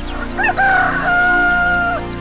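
Rooster crowing, cock-a-doodle-doo: a couple of short rising notes about half a second in, then one long held note that drops off at the end.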